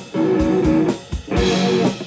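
Live electric guitar and drum kit playing together: rhythmic chords on a light blue electric guitar over a steady kick-drum beat on a Ludwig kit, with a cymbal wash in the second half.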